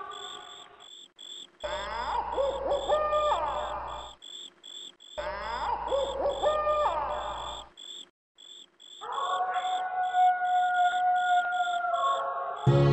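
Crickets chirping steadily, about three chirps a second, under tense background music. The music plays the same swelling phrase of gliding tones twice, then holds a long steady tone near the end.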